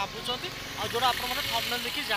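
A man talking to the camera, with road traffic running steadily in the background.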